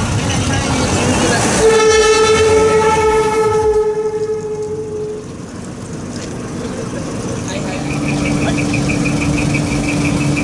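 A truck's air horn sounds one long steady note for about three seconds, starting about one and a half seconds in, over idling truck engines. Near the end, a lower steady tone with a fast high pulsing starts up.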